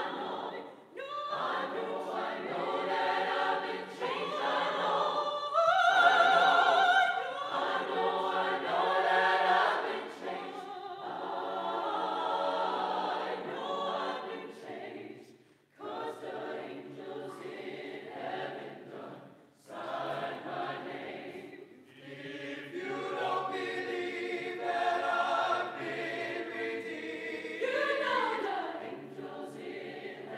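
Mixed concert choir singing in phrases, with short breaks about halfway through and again about two-thirds of the way in; the loudest passage comes about six seconds in.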